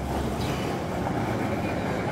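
Steady ambient noise of a large, crowded exhibition hall: an even low hum with no single voice or event standing out.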